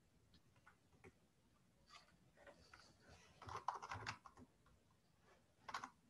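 Faint typing on a computer keyboard: scattered key clicks, with a denser run of them in the middle.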